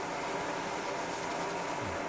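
Small wood lathe running steadily at a low speed, a paper towel held against the spinning pen blank to apply cut-and-polish.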